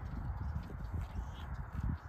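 Cattle grazing close by, tearing and cropping grass, heard as a run of short, irregular low thuds.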